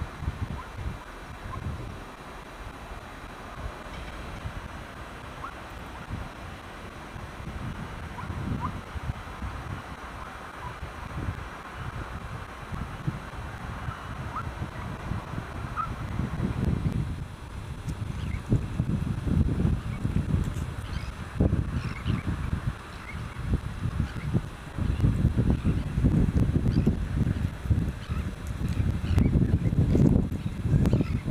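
Wind buffeting the microphone in low gusts, strongest in the second half, with faint short bird calls in the distance.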